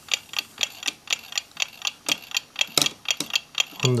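A mechanical clock ticking steadily, about three ticks a second.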